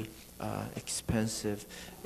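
Speech only: a person talking at a lecture, after a brief pause at the start.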